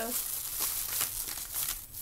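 Crinkling and rustling of something being handled, lasting nearly two seconds.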